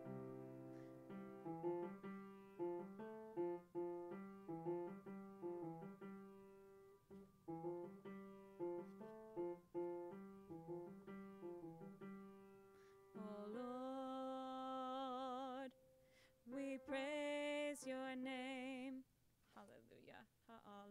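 Piano played alone in a slow introduction of repeated chords, then a woman's voice comes in about two-thirds of the way through, singing long held notes with vibrato over the piano.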